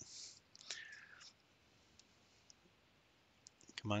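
Mostly quiet, with a soft breath in the first second, a few faint scattered clicks around the middle and a quick run of small clicks just before a voice starts near the end.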